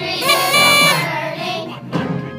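Children singing a song over backing music, with a loud held note in the first second.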